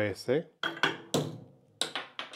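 Pendulum impact tester's hammer released and swinging down to strike a 3D-printed filament test bar: a run of sharp metallic clacks with short ringing from about half a second in, and a louder clack near the end followed by small rattles.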